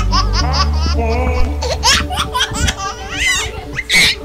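A group of children and teenagers laughing and shrieking over music with steady low bass notes, with a loud burst of laughter near the end.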